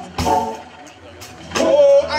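Live electric blues band playing. A drum hit comes just after the start, the band drops back in the middle, and a loud held note comes in about a second and a half in.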